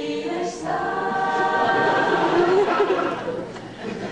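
A choir singing together, many voices on held notes, coming in about a second in and at its loudest in the middle.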